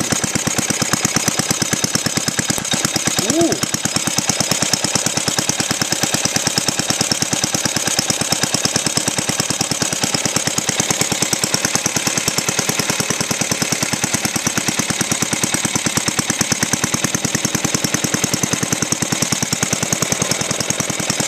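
Cast-iron Briggs & Stratton single-cylinder four-stroke engine, fitted with a glass head, running steadily on natural gas: a rapid, even stream of firing pulses.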